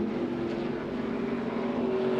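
NASCAR race trucks' V8 engines running at speed in a steady, sustained note, heard over the trackside broadcast microphones.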